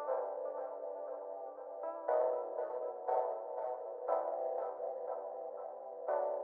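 Instrumental dark R&B beat intro: a filtered synth melody of plucked, echoing chords, with a new note about every half second and a fresh chord about every second or two. No drums or bass come in yet.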